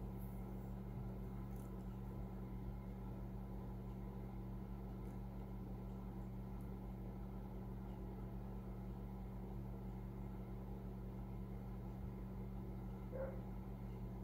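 Faint steady low hum over quiet room tone, with a brief soft sound near the end.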